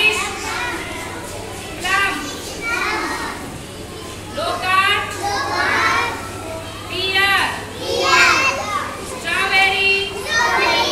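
Young children chattering and calling out, several high voices overlapping, with a steady low hum underneath.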